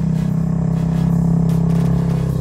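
An engine running steadily nearby: an even, low hum.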